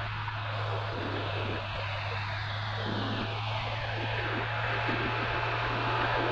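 Motorcycle cruising at a steady speed: wind and road noise with a steady engine hum underneath.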